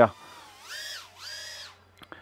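BetaFPV Pavo20 Pro cinewhoop's small brushless motors and 2.2-inch props whining in flight on a sagging 2S battery, in two swells that rise in pitch, hold and drop back as the throttle is pushed and released.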